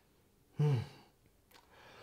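A man's short 'mm' hum about half a second in, falling in pitch, with near silence around it.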